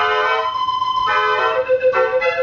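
Dutch street organ (draaiorgel) De Koenigsberg, built by Koppelaar, playing a tune on its pipes. A long held high note sounds over changing chords until about a second in, and a lower held note comes in near the end.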